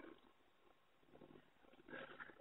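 Near silence: a pause in a man's spoken talk, with only faint, brief low sounds.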